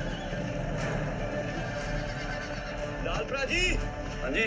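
Film score playing, with a horse whinnying in quick wavering pitch near the end.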